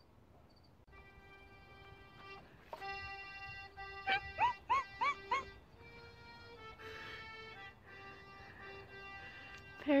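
Accordion playing held chords. About four seconds in, four short rising yelps sound over it.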